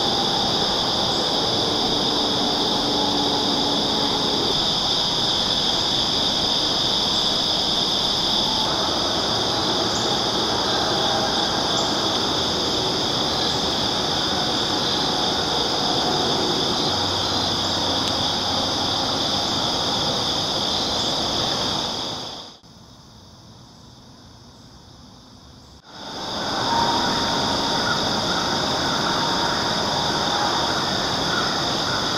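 Steady, high-pitched chorus of insects chirring in woods and field, unbroken except for about three seconds past the middle, where it drops away and then returns.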